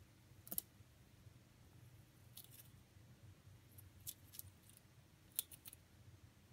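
A rabbit gnawing a pinecone: sharp little crunches and snaps as her teeth bite into the dry cone scales, coming singly and in short clusters over a quiet background.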